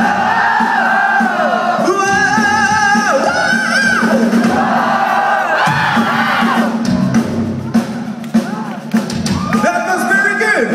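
Live metal band music in a concert hall: a sung melody over a steady held low note, with the audience singing along. The crowd shouts and cheers about seven to nine seconds in.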